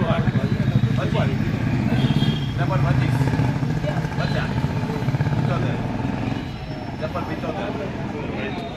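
Several men's voices talking, over a low engine running that fades away about six and a half seconds in.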